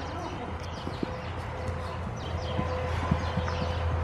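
Horse's hoofbeats on the soft dirt footing of an indoor arena, faint scattered thuds over a steady low rumble.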